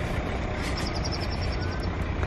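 Steady outdoor rumble and hiss, with a quick run of faint high ticks lasting about a second, starting just after half a second in.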